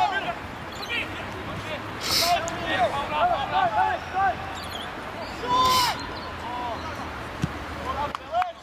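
Several men's voices shouting short calls across the field at once, with loud hissing bursts about two seconds in and again near six seconds, over a steady low hum.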